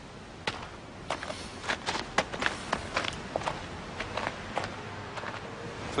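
Footsteps of two men walking: a run of short, uneven steps over a steady background hiss.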